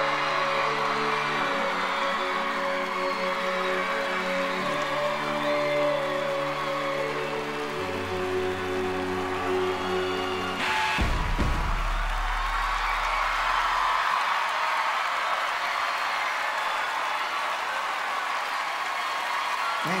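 The band's final held chords ring out, then stop about halfway through with a sharp low boom that sustains for a few seconds. A studio audience cheers and applauds over the ending and on after it.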